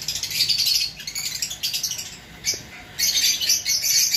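A flock of caged pet birds chirping and chattering with shrill, busy calls, easing off briefly about two seconds in and then picking up again.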